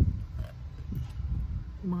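Wind buffeting the microphone with a steady low rumble, and faint mouth sounds of a woman chewing a bite of food. Speech resumes near the end.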